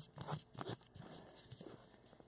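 Faint handling noise of a camera being screwed onto a tripod: a few small clicks and scrapes from the mount and the hands on the camera.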